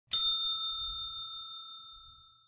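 A single bell-like ding, struck once and ringing out with a slow fade: a notification-bell sound effect for a subscribe button.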